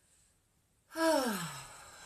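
A woman's drawn-out, sighing "okay" about a second in, her voice falling steeply in pitch and trailing off.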